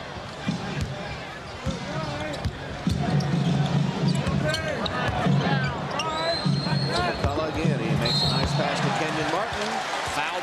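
A basketball bouncing on a hardwood arena floor during live play, a series of short thuds, over the voices of the arena crowd.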